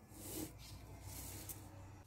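Faint rustling of a paper cake liner being handled and pressed against a glazed sponge cake, with a light click about one and a half seconds in.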